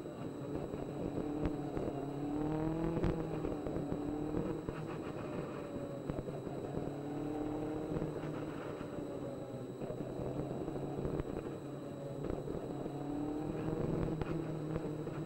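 Onboard sound of a Legends race car's Yamaha motorcycle engine at racing speed, its pitch climbing and dropping back several times, over rough wind and road noise on the camera.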